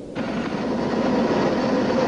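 Jet aircraft engine noise, a steady, even rushing sound that cuts in suddenly just after the start.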